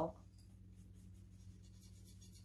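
Faint light scratching of a paintbrush being handled and loaded with paint, over a steady low electrical hum.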